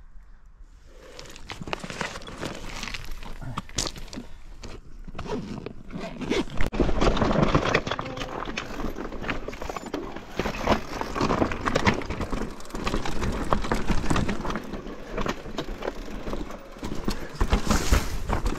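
Mountain bike descending a rocky trail: an uneven clatter of tyres knocking over loose stones and rock steps, with the bike's chain and frame rattling. It starts about a second in.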